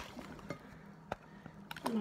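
Handling noise of a phone being propped into place: a few separate light knocks and clicks, over a faint steady hum. A voice comes in near the end.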